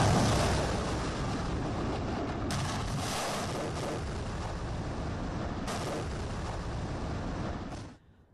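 Military missiles launching: a sudden loud blast of rocket ignition, then a sustained rushing noise of rocket exhaust. The sound changes abruptly twice as it jumps between launches.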